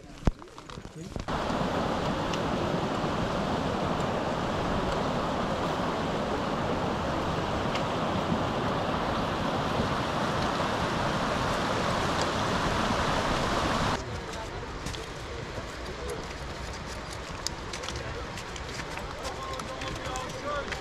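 Mountain stream rushing over rocks: a loud, steady hiss of water that starts suddenly about a second in and cuts off suddenly about fourteen seconds in. After it, quieter open-air sound with light clicks and faint voices.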